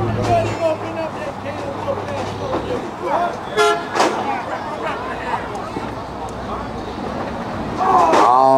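A short, high car-horn toot about halfway through, followed at once by a sharp knock, over the steady chatter of an outdoor crowd.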